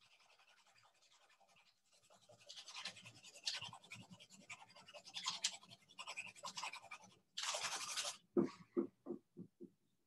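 A pencil shading on paper: irregular scratchy strokes that grow busier after about two seconds, with one longer dense stroke just past the seven-second mark. Near the end comes a short run of about six knocks, each closer together and fainter than the last.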